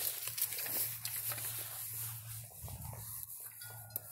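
Footsteps rustling and crunching through dry fallen leaves, over a low steady hum that briefly drops out twice in the second half.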